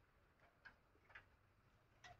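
Near silence, with a few very faint short ticks.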